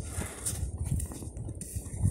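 Footsteps in snow: a run of soft, irregular thuds.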